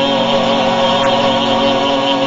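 A hymn's long held chord: several notes sustained steadily without a break, with the chord changing just after.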